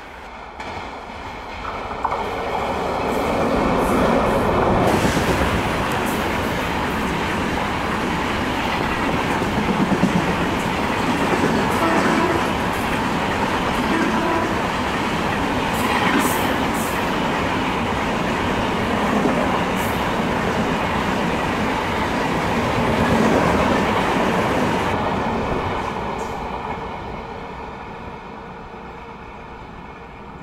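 Express train coaches passing close at speed: a loud steady rush and rattle with the wheels clacking over rail joints. It builds over the first few seconds and fades near the end.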